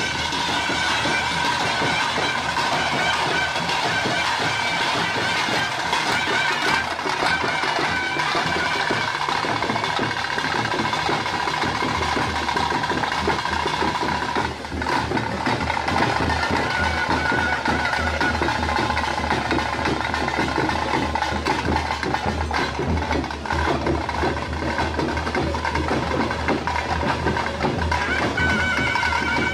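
Traditional ritual music: a reed pipe holding long steady notes over drumming. The music dips briefly about halfway through.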